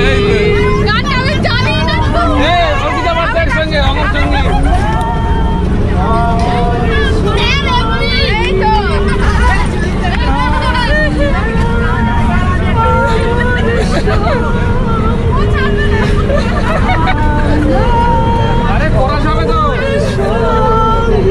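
Many voices talking, laughing and calling out at once inside a crowded bus, over the steady low rumble of the moving bus.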